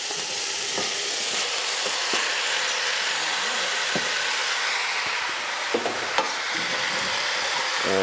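Skin-on chicken pieces sizzling in hot oil with onions and garlic in a stainless steel pot, browning, stirred with a wooden spatula. A few light knocks of the spatula against the pot are heard now and then through the steady sizzle.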